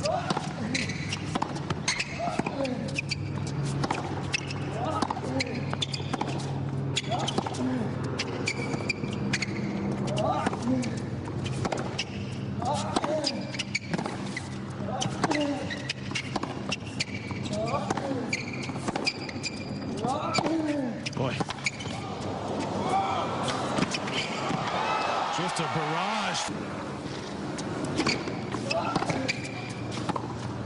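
Tennis match play: repeated sharp racket strikes on the ball and ball bounces on the hard court, with short grunts from the players on their shots. Crowd noise swells around two-thirds of the way in as a point is won.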